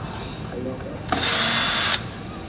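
Cordless drill-driver running in one short burst of about a second near the end, turning a guitar pickguard screw. It stops abruptly.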